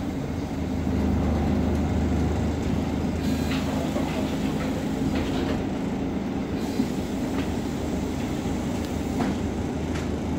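Interior noise of a Volvo B10BLE articulated-axle city bus: a steady low rumble from its diesel engine and ZF automatic gearbox. A few short clicks and rattles from the body and fittings come in the middle and near the end.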